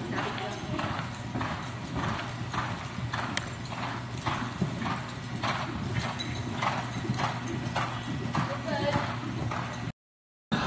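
Hoofbeats of a cantering horse on the soft dirt footing of an indoor arena, a steady rhythm of a few beats a second over a low steady hum. The sound cuts off suddenly at the very end.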